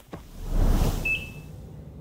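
Cartoon sound effects: a low rumble that swells and fades over the first second, and a short high beep about a second in.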